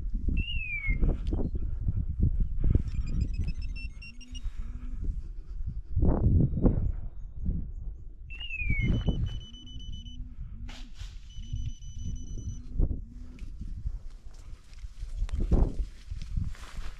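Wind buffeting the microphone in uneven gusts, with handling knocks. Under it, faint rows of repeated animal calls, and twice a short high falling chirp.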